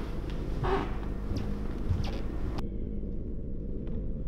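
Steady low rumble of a spaceship engine ambience effect. About two and a half seconds in, the higher sounds cut off abruptly and only the low rumble remains.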